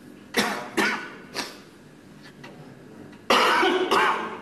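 A person coughing: three quick coughs in the first second and a half, then a longer, louder cough or throat-clearing near the end.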